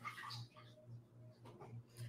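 Near silence: faint room tone with a low, evenly pulsing hum and a few faint short sounds.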